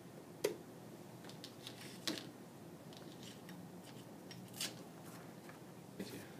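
Faint clicks and light rattles of a camera cable and its BNC connector being handled and plugged into a handheld tester, with a few sharper clicks about half a second, two seconds and four and a half seconds in.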